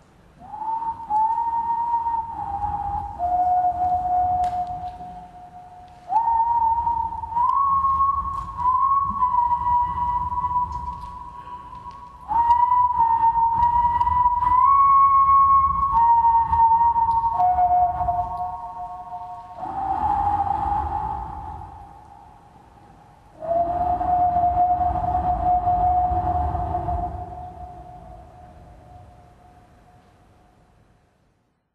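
Closing music: a slow melody in a pure, whistle-like tone, its held notes joined by slides, over a low accompaniment. It comes in several phrases with short dips between them and fades out near the end.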